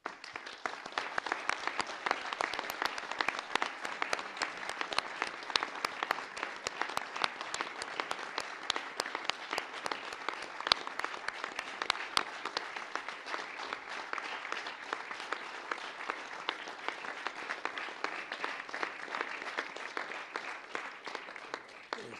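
Audience applause: dense hand-clapping that starts suddenly and goes on steadily, thinning a little near the end.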